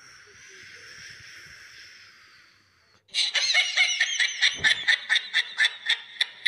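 A faint steady hiss, like a running tap, for about three seconds, then loud, high-pitched laughter: a rapid string of snickering giggles.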